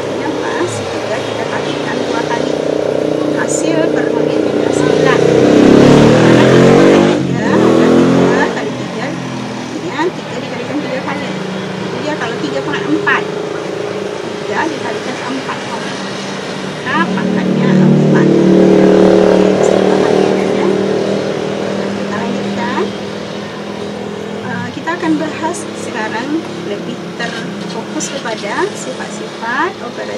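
Passing motor vehicles: engine sound swells and fades twice, about six seconds in and again about nineteen seconds in, over a continuous hum of traffic.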